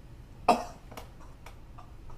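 A man gives one sharp, breathy, cough-like burst about half a second in, then a couple of faint clicks.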